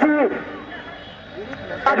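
A male commentator speaking in Hindi pauses for about a second and a half. In the gap, a faint background hubbub of voices can be heard.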